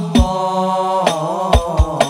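Hadroh music: a male voice singing an Arabic sholawat melody, holding a long note and then turning it, over a few deep frame-drum (rebana) beats.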